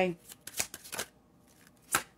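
A tarot deck being shuffled and handled: a run of quick papery riffles about half a second in, and another short one near the end.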